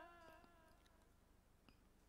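Near silence: the faint tail of a man's chanted note dies away in the first moments, then only room tone with a few faint clicks.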